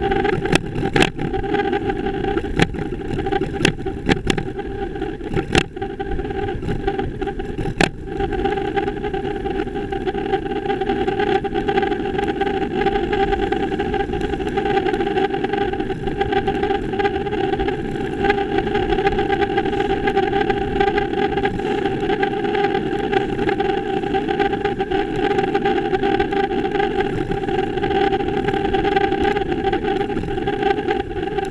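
Riding noise picked up by a bicycle-mounted camera while cycling on a city street: a steady rumble of rolling and wind with a constant hum. Several sharp clicks and knocks come in the first eight seconds, then it runs evenly.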